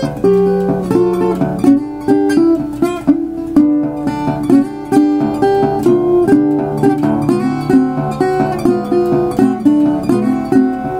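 Resonator guitar in open D tuning, fingerpicked with a thumbpick and fingerpicks: a swung shuffle with a steady, repeating thumbed bass note under licks on the higher strings.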